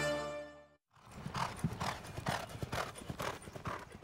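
Theme music fading out, then after a moment's silence the hoofbeats of a racehorse running on a dirt track, a steady run of about three beats a second.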